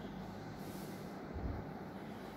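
Faint low background rumble, swelling slightly about one and a half seconds in.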